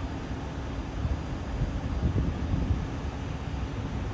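Outdoor ambience: wind buffeting the microphone over a low, steady engine rumble from fire apparatus at the scene.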